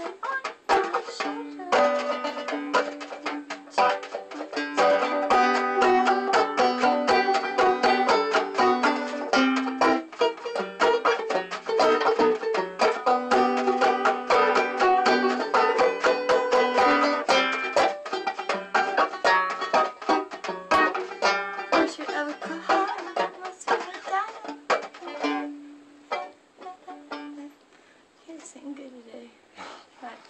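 A banjo played solo: a dense run of rapid picked notes over steady, repeated low notes. The playing thins out and grows quieter near the end.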